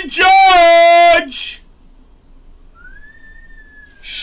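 A man's voice holds one long, drawn-out exclamation for about the first second. After a pause, a single soft whistled note rises and then slowly falls away near the end.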